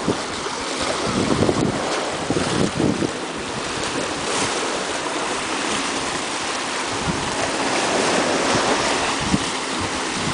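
Small sea waves washing in over granite rocks at the shoreline, a continuous splashing wash. Wind gusts on the microphone rumble at times, most strongly early on and again near the end.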